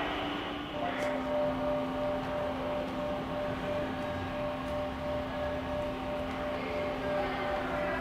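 A steady mechanical hum made of a few constant tones over a noise bed, dropping slightly in pitch about a second in.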